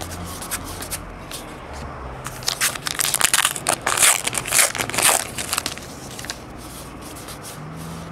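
A baseball-card pack wrapper being torn open and crumpled: a crackling, crinkling burst from about two to five seconds in, with quieter card handling either side.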